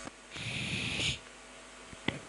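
A man's breath into a close handheld microphone: one steady hiss under a second long, then quiet room tone.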